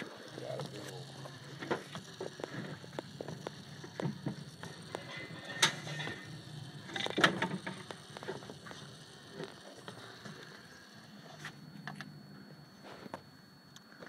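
Small electric gear motor of a solar-powered wooden walking robot running with a low hum while its wooden linkage and gears click and knock against the plastic surface, with two louder clacks midway. The hum stops about three seconds before the end.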